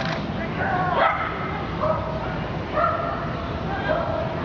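A dog giving short, high-pitched barks, about five of them roughly a second apart.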